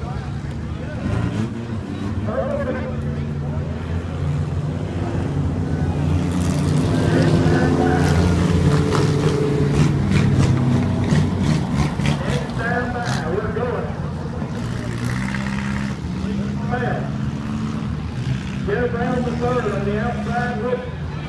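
A pack of stock-car engines running at pacing speed, a layered low drone that swells as the field passes close by, from about six to twelve seconds in, then eases off. The cars are circling under caution with one lap to go before the green flag.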